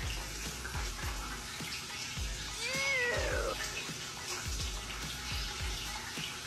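A cat meowing once, about halfway through: a single meow that rises and then falls in pitch.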